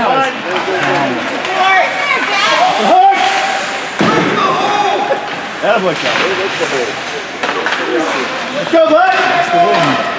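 Spectators' overlapping shouts and chatter echoing in an ice rink during a youth hockey game, with a few sudden knocks from play on the ice.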